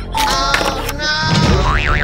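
Cartoon-style comedy sound effects over background music: a sliding pitched tone in the first second, then a wobbling boing near the end.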